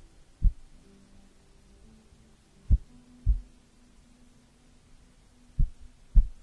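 Soft, low thumps in pairs, each pair about half a second apart and recurring about every three seconds, as fingers and a thin white sheet knock against a furry microphone windscreen. A faint low hum sits underneath.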